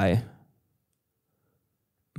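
A man's voice trailing off on the last word of a sentence, then near silence for about a second and a half.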